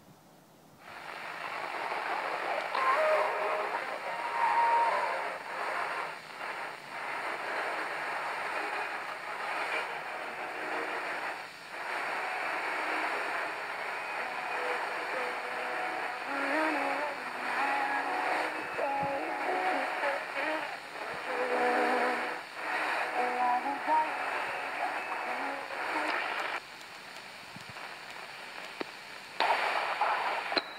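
Eton G6 Aviator portable radio's speaker playing a weak daytime shortwave AM signal on 11565 kHz: a faint voice buried in hiss and static, fading up and down. Near the end the sound drops and changes as the radio is tuned down the band.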